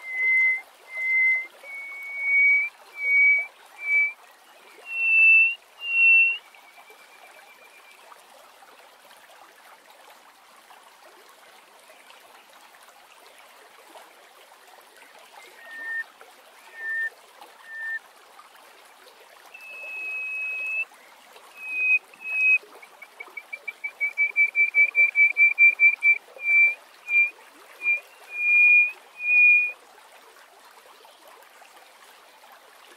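Hoopoe lark singing: a run of clear, whistled notes that step up in pitch over the first six seconds. After a pause come a few lower notes, a long whistle, and then a fast trill of rapid notes followed by a few more whistles near the end, over a faint steady hiss.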